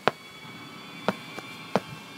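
Four sharp taps, the first the loudest, then three closer together in the second half, over a faint steady background tone.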